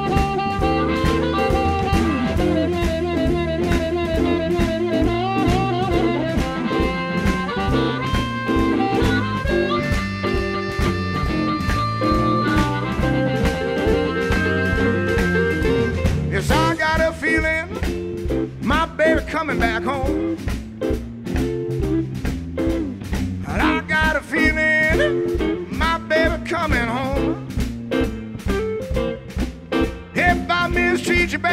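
Electric blues band playing live, with guitar, bass and drums keeping a steady beat and no singing. From about halfway through, a lead instrument comes in with wavering, bent notes, typical of an amplified blues harmonica solo.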